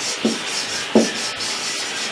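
Felt-tip marker rubbing and squeaking across a whiteboard as a word is written, a steady scratchy hiss.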